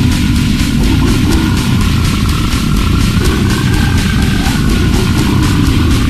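Extreme metal music: heavily distorted, low guitars and bass over fast, regular drum hits, with a long high note held above them that bends up slightly around the middle.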